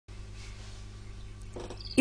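Low steady hum with faint hiss: background noise of a home voice recording, with a faint short sound about one and a half seconds in.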